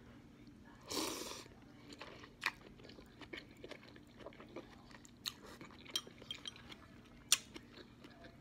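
A person eating a forkful of instant noodles: a short slurp about a second in as the noodles are drawn in, then close-up chewing with small wet mouth clicks. There is a sharper click near the end.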